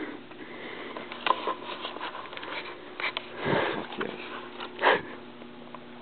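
A person sniffing and breathing out sharply a few times, short separate sounds over a low steady hum, with a faint click or two.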